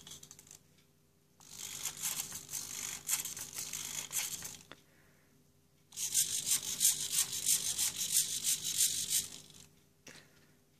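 MobBob robot's micro hobby servos whirring and buzzing as it carries out two commanded movement routines, two bursts of about three seconds each with a short pause between.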